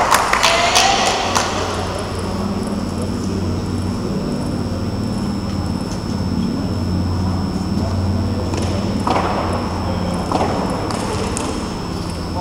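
A steady low mechanical hum filling a large hall, with a thin steady high-pitched whine over it. A few sharp clicks come in the first second or so, and there are two brief bursts of noise near the end.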